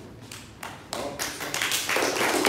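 Audience hand clapping: a few separate claps about a third of a second in, building about a second in into steady, louder applause.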